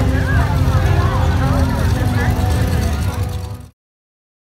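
Parade noise: several voices calling out over a heavy low rumble from a passing hearse, with faint music under it; the sound cuts off suddenly near the end.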